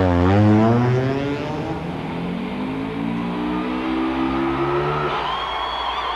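Race car engines at full throttle: one passes with its pitch dropping right at the start, then the engine note climbs in repeated steps as it shifts up through the gears. About five seconds in, a high, wavering held tone comes in over it.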